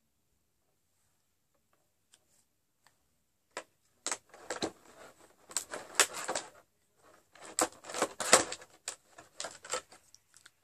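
Lipstick tubes and caps being handled: rapid clicking and clattering of small hard plastic parts in two bursts, starting about three and a half seconds in.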